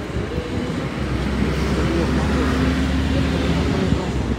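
A motor running with a steady low hum, starting about a second in and cutting off just before the end, over background voices.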